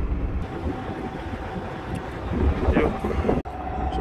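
Wind buffeting the microphone over a steady hum, with faint voices a little past the middle.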